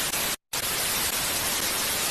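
TV static sound effect: a steady white-noise hiss that cuts out for a moment about half a second in, then resumes.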